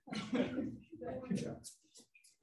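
A person's voice in two short bursts, harsh and breathy, followed by brief hissy sounds near the end.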